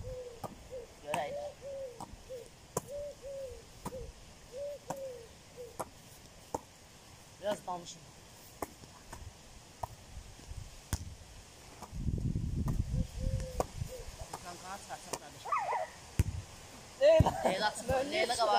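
A volleyball being hand-passed back and forth, heard as a scattering of sharp slaps, while a bird calls with a repeated short low hooting note through the first few seconds and again in the middle. Voices come in near the end.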